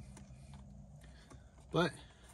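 Faint handling of a small cardboard product box: light scrapes and tiny taps of fingers on the packaging.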